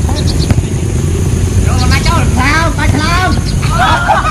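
Footballers shouting to each other across an outdoor pitch for a couple of seconds mid-way, over a steady low rumble, with a single sharp knock about half a second in.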